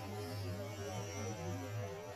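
A low, steady hum with faint wavering tones above it.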